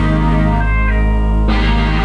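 Rock band playing live in a small room: electric guitars, electric bass and drum kit, loud. For about a second the high end drops away and a few held guitar notes ring, then the full band comes back in about a second and a half in.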